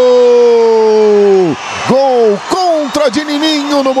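Male football commentator's drawn-out goal cry: a long, loud held vowel that slowly falls in pitch and breaks off about a second and a half in, followed by several short shouted calls.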